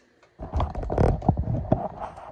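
Handling noise from a phone camera being picked up and moved by hand: a dense run of rubbing, rumbling and small knocks against the device, starting about half a second in.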